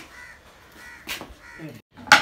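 A crow cawing several times in short, harsh calls, with a sharp knock about a second in.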